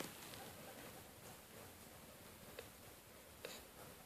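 Near silence with a few faint, scattered ticks and rustles, from a rabbit and guinea pigs pulling at and chewing dry hay.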